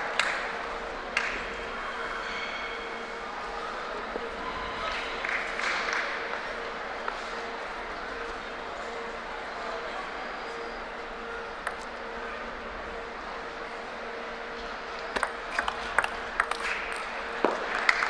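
Table tennis rally near the end: a quick run of sharp clicks, about three a second, as the ping-pong ball strikes paddles and table. Before it, the murmur of a hall crowd with a steady low hum.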